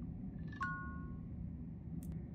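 A short, faint electronic chime about half a second in, two steady tones sounding together for about half a second, signalling that the Apple Watch's setup with the iPhone has finished.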